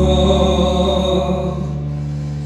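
A man singing live into a microphone, holding one long note with a slight vibrato over a steady low accompaniment, slowly fading.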